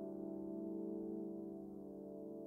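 Solo piano improvisation: a held chord rings on without new notes, slowly fading.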